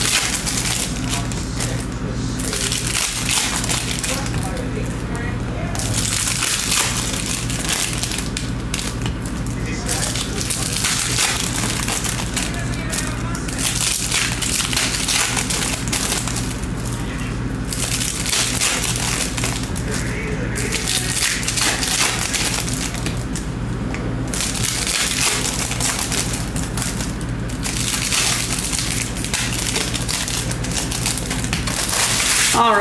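Foil wrappers of 2023 Bowman Chrome trading-card packs crinkling and tearing as packs are ripped open by hand, in repeated stretches a few seconds apart, over a steady low hum.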